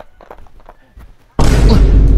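A sudden loud boom with a heavy low rumble starts about a second and a half in and lasts about a second, after a quiet start.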